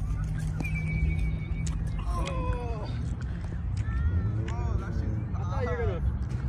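People's voices calling out several times, rising and falling in pitch, without clear words, over a steady low rumble.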